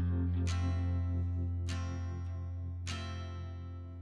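Background music: plucked guitar chords struck about every second and a quarter over a held low bass note.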